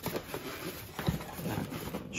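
Polystyrene foam packing blocks being handled and pulled out of a cardboard box: faint, irregular soft knocks and rubbing, a little stronger about a second in.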